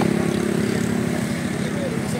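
An engine running steadily with a low drone, with voices in the background.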